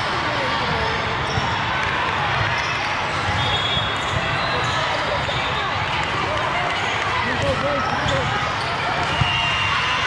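Busy din of a sports hall full of volleyball courts: many overlapping, indistinct voices of players and spectators, with scattered thuds of volleyballs being hit and bouncing.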